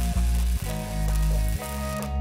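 Electric arc welding: a steady crackling hiss as a bead is run on steel, cutting off right at the end. Background music plays underneath.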